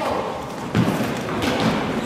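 Two thuds of a ball in play on a wooden sports-hall floor, less than a second apart, sounding in a large hall.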